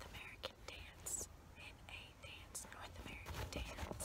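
Soft, close whispering, with fingers scratching and tapping a cloth baseball cap in short clicks.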